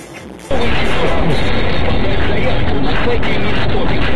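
Background music cuts off about half a second in, and loud, steady car-interior noise from a dashcam takes over: road and engine rumble with a voice-like sound mixed in.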